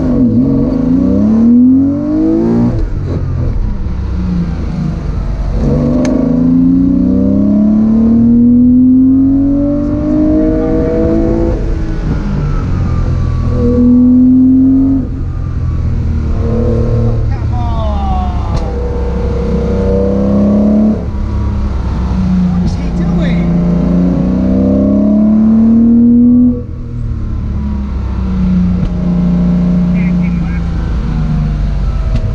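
Classic Porsche 911's air-cooled flat-six, heard from inside the cabin, accelerating hard through the gears. The pitch climbs steadily, then drops at each gear change, about five times.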